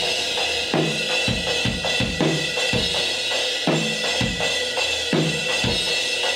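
Recorded drum kit played back over studio monitors: kick and snare in a steady beat under a constant wash of cymbals and hi-hat.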